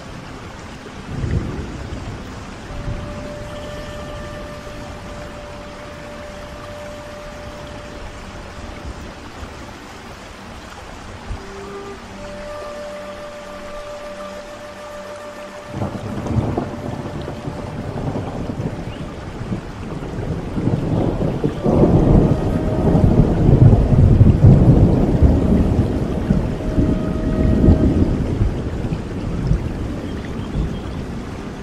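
Steady rain with a Native American flute playing a few long, held notes. About halfway through, a long rolling thunder rumble begins; it builds to the loudest sound in the last third, then eases off near the end.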